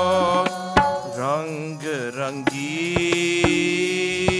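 Kirtan music: a harmonium holds a steady chord under repeated tabla strokes. A sung vocal phrase glides up and down from about one second in, then gives way to the held harmonium tone.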